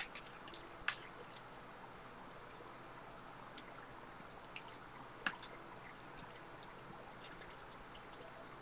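Faint flicks and clicks of a thick stack of paper trading cards being thumbed through and sorted by hand, with sharper clicks about a second in and a little past five seconds.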